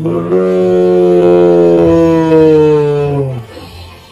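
A man's loud, drawn-out groan, one held note slowly falling in pitch for about three and a half seconds. It is a cry of disappointment as the hooked snakehead comes off the line.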